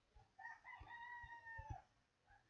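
A faint rooster crowing in the background: one call of about a second and a half, held on one note and dropping at the end.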